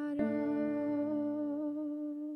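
A woman singing one long held note of a slow worship song, with a grand piano chord struck about a fifth of a second in and left ringing under her voice.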